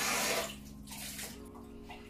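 Water running from a kitchen tap as the blender lid is rinsed under it, shut off about half a second in. A faint steady low hum follows.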